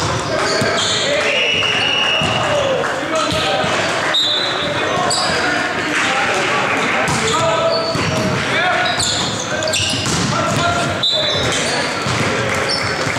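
Indoor volleyball rally in a large gym hall: players' voices calling and shouting with the hall's echo, sharp ball hits, and short high squeaks of sneakers on the hardwood court.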